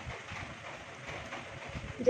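Eating sounds: chopsticks working noodles in a pan and chewing, heard as a fast run of soft low knocks over a faint hiss.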